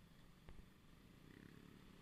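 Faint low rumble of small motorcycle engines moving off in traffic, with a single click about a quarter of the way in and a steadier low engine note coming in after about a second.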